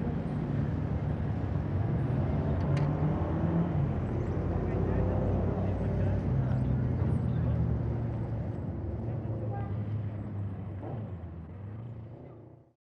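Street ambience: a vehicle engine running steadily with indistinct voices in the background. It fades out over the last few seconds.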